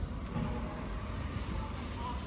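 Steady low outdoor rumble, with faint, indistinct higher sounds over it.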